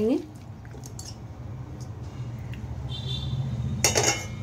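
Kitchen utensils being handled as mango pieces are spooned from a bowl into a mixer jar, over a steady low room hum; near the end a spoon strikes the bowl or jar with one sharp clink.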